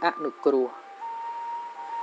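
A man's voice preaching in Khmer for the first moments, then a pause filled by soft background music holding a steady note.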